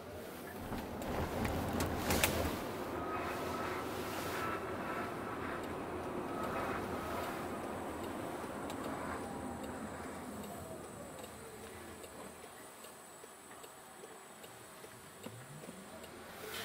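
Cabin noise of a Jaguar I-PACE electric car pulling away from a stop: tyre and road noise builds with a faint whine that rises in pitch, then both fade as the car slows in the last few seconds. A sharp click sounds about two seconds in.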